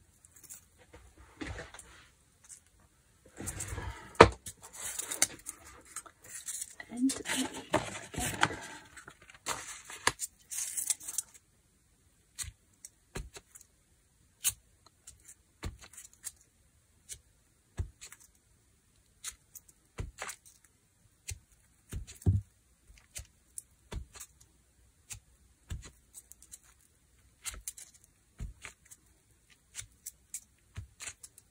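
Rustling and handling noise for several seconds in the first third, then scattered light taps and clicks as a flower stamp is pressed onto a gel printing plate to lift paint and stamped onto paper.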